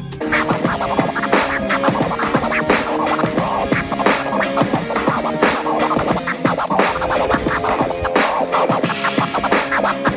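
Vinyl being scratched by hand on a Numark PT01 Scratch portable turntable: a fast, continuous run of back-and-forth record scratches, many strokes a second, cutting in sharply at the start.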